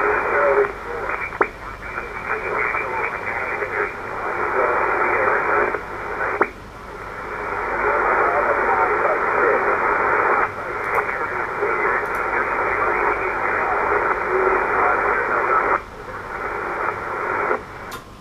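Shortwave SSB reception from the Icom IC-7200 transceiver's speaker: a weak, distant station's voice buried in hiss and splatter interference (QRM) from a neighbouring signal, heard as a thin, narrow-sounding rush. The signal drops out briefly a few times.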